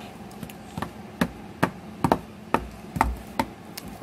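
A doll hopped along wooden deck boards as if walking: a run of light knocks, about two to three a second.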